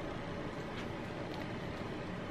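Steady low hiss of room tone, with no distinct sound in it.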